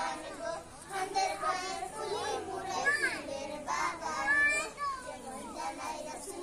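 A group of young children talking and calling out over one another, with a couple of high-pitched calls about three and four and a half seconds in.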